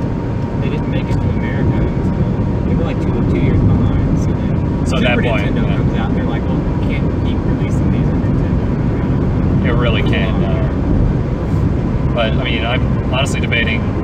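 Steady road and engine rumble inside a moving car's cabin, with brief snatches of quiet talk.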